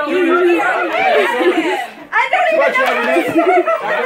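A roomful of people talking over one another, excited voices overlapping, with a short lull about two seconds in.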